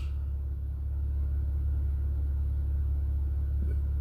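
A steady low hum with no other sound on top of it.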